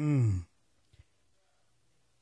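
A man's short wordless vocal sound through a handheld microphone, falling in pitch, lasting about half a second at the start.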